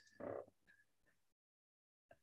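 Near silence on a video-call audio feed, broken about a quarter second in by one brief, faint voiced sound like a short 'uh'. From a little past halfway the feed drops to complete digital silence.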